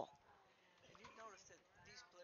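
Near silence, with faint voices talking in the background from about a second in.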